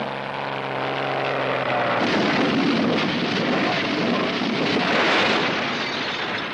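Cartoon propeller-airplane sound effect: a steady droning engine tone for about two seconds, which then turns into a loud rush of noise lasting about four more seconds and cutting off abruptly as the plane lands on the heap.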